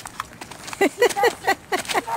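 A person's voice making a quick, even run of short syllables, about five a second, each falling in pitch, starting about a second in. Under it, light footsteps skipping on asphalt.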